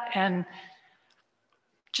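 A person's voice saying "and" mid-question, then trailing off into a pause of near silence with a couple of faint clicks.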